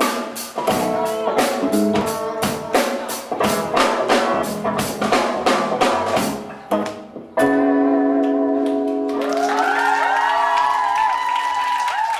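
Live band of electric bass, acoustic guitar and drum kit playing a run of evenly spaced accented hits, breaking off about seven seconds in, then striking a final chord that is held and rings. The audience starts cheering over the held chord near the end.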